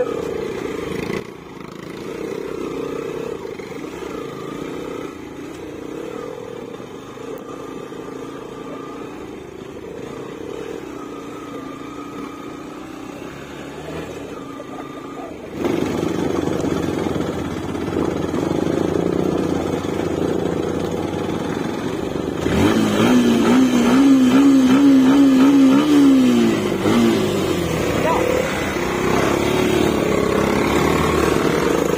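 Motorcycle engines running at low speed on a rough dirt track: a steady low hum for the first half, getting louder about halfway through as the bikes pull away, with a wavering engine note that falls away near the end.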